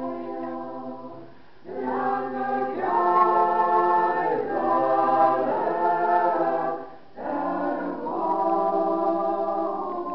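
A small choir singing a Lithuanian song in slow, held phrases, breaking briefly for breath about a second and a half in and again about seven seconds in.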